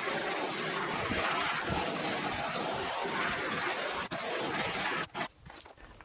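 Handheld propane torch flame hissing steadily as it scorches the surface of a wooden sign, cutting out about five seconds in.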